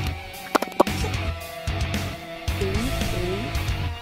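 Background music: a guitar-led track over a steady, repeating low beat. Two short, sharp sounds stand out under a second in.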